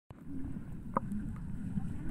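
Muffled underwater sound of pool water: a low rumble with bubbly gurgling as a child swims and breathes out beneath the surface, and one sharp click about halfway through.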